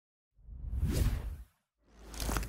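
Whoosh sound effects from an animated logo intro: one whoosh swells and fades over the first half, and a second starts near the end.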